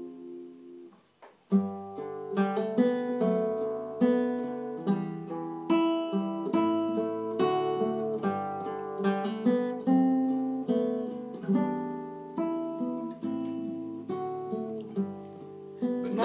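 Acoustic guitar played solo as an instrumental break, picked notes and chords at a steady, unhurried pace. The playing pauses briefly about a second in, then resumes.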